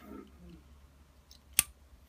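RJ45 plug of a Cat5 cable pushed into a network-style jack on a circuit board, with faint plastic handling rubs and then one sharp click about a second and a half in as the plug's latch snaps into place.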